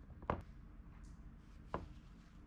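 Two light, sharp knocks on a wooden workbench, about a second and a half apart, as the metal pedal assembly and parts are handled and set down.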